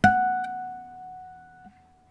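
Dowina Hybrid nylon-string guitar (solid spruce top, granadillo back and sides) with an E harmonic plucked once, ringing and slowly fading. Near the end a soft touch damps most of the ring as the A string, resonating in sympathy with the E, is muted, leaving only a faint tone.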